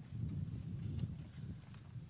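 People settling into folding chairs after being told to sit: faint shuffling and a few small knocks over a low, uneven rumble.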